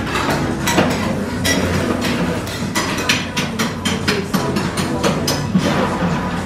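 Metal spatulas chopping and tapping on the frozen steel plate of a rolled ice cream counter, a quick irregular run of sharp metal clacks, several a second, as ingredients are chopped into the ice cream base.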